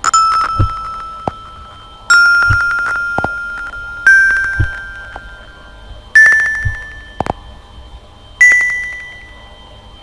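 Five xylophone notes played one after another from a phone app, each struck and ringing away, about two seconds apart and each a step higher in pitch than the last.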